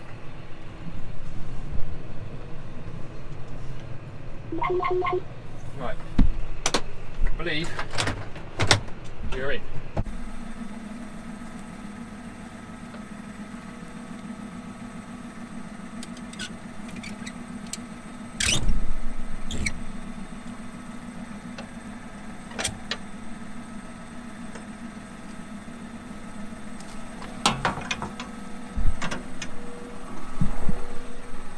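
A John Deere 6155R tractor engine running, heard from inside the cab, with a few clicks and knocks. About ten seconds in the sound changes to a steady idle heard from outside, broken by metal clunks from work on the topper: one loud one near the middle and a cluster near the end.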